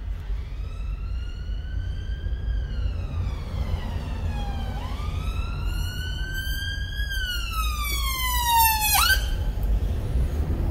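Emergency-vehicle siren wailing, slowly rising and falling in pitch through two long sweeps. The second sweep is louder and ends in a fast fall that cuts off suddenly about nine seconds in. Low road and engine rumble from inside the car runs underneath.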